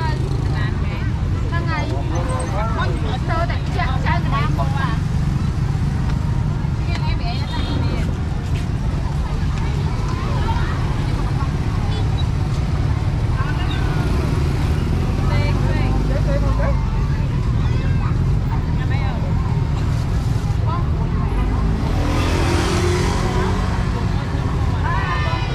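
Busy street ambience: scattered chatter of people close by over a steady low traffic rumble. Near the end a vehicle passes louder, its engine note rising.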